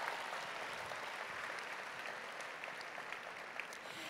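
Large audience applauding, a steady patter of many hands that slowly dies down.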